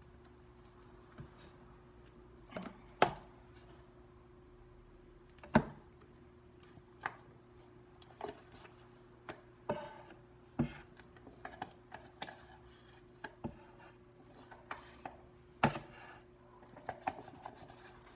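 Faint scattered clicks and knocks of things being handled in a kitchen, a dozen or so, the sharpest about 3, 5.5 and 15.5 seconds in, over a steady low hum. The blender is not running.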